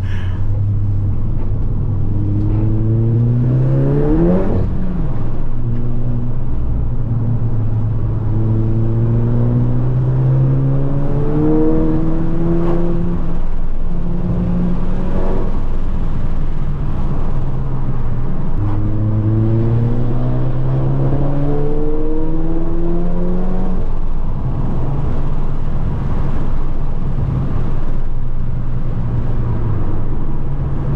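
Turbocharged 2.0-litre four-cylinder engine of a heavily tuned Mk7 Golf GTI, accelerating hard: its pitch climbs in several pulls through the gears, with a short sharp crack at three of the changes. It settles to a steadier note near the end.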